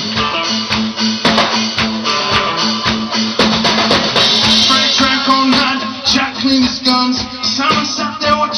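Live rock band playing an instrumental passage with electric guitar and drum kit, a steady beat throughout.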